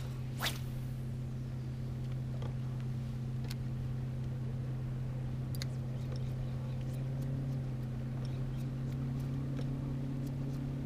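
Steady low electric hum of a bow-mounted trolling motor holding the bass boat. A few faint light ticks sit over it, and a brief sharp sound comes about half a second in.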